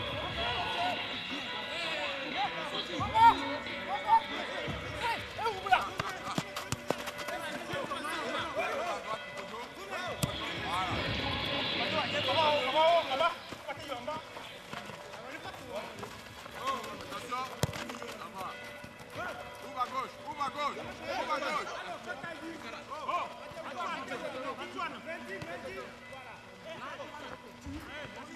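Footballers shouting and calling to one another during an outdoor pick-up match, with the occasional thud of the ball being kicked.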